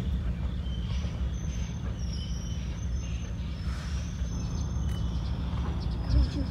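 CSX freight train of covered hopper cars rolling past, a steady low rumble with a few faint thin high tones over it.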